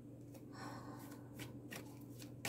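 Tarot cards being handled and shuffled by hand: faint soft rustling with a few light card clicks in the second half.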